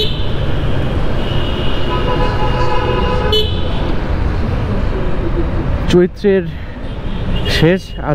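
Riding noise from a motorcycle in city traffic: a steady low rumble of engine, road and wind. A vehicle horn honks from about two seconds in to about three and a half seconds in.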